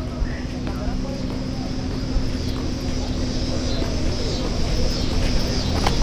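A car engine idling steadily with a low hum, growing gradually louder.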